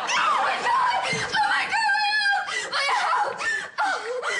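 Studio audience laughing throughout, with a woman's high, held cry cutting through about halfway in.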